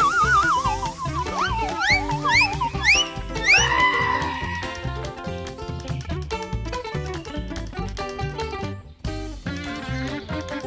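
Background music. Over it in the first four seconds there is a wavering tone, then about five quick rising glides in a row that end in a held tone.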